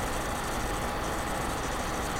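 Steady background hum and hiss of room noise, with a faint steady tone and no distinct sound events.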